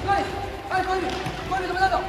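Several soccer balls being dribbled by children, with repeated light thuds of ball touches and bounces on a hard indoor court floor.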